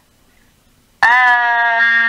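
A person's voice suddenly holding one long, steady, high note for about a second and a half, starting about a second in after near silence.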